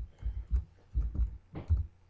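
Computer keyboard keystrokes as a word is typed: about half a dozen short, dull thumps in two seconds.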